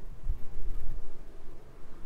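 Low rumbling handling noise on a handheld camera's microphone as the camera is swung around, with a few dull bumps in the first second.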